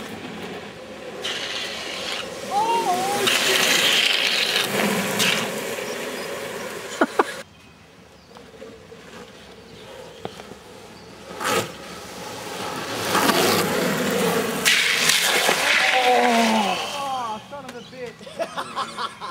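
Longboard wheels rolling and sliding on asphalt as riders drift through a corner, in two passes that build and fade, with shouts over them. The first pass cuts off suddenly a little before the middle.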